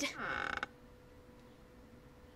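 A door creaking open: one short, scratchy creak of about half a second near the start, then only a faint steady hum.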